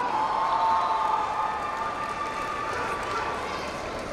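An audience in a large hall cheering and clapping, a steady wash of crowd noise with a held voice rising above it in the first second or so.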